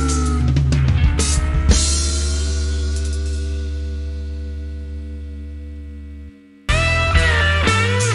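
Rock band with electric guitar, bass, keyboard and drums playing a song's ending: a bent-down guitar chord and a few drum hits, then the final chord rings and fades slowly over several seconds before cutting off. After a brief near-silent gap, guitar-led rock music starts again at full level near the end.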